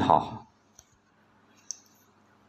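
A narrating voice in Thai trails off about half a second in, followed by a pause of near silence broken by two faint short clicks about a second apart, the second sharper and higher.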